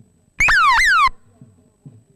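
A loud, high electronic-sounding tone that drops in pitch twice in quick succession, lasting under a second, over faint regular low beats.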